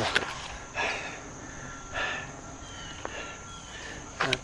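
A few soft puffs of breath close to the microphone, about a second apart, over faint outdoor quiet, with a single click about three seconds in.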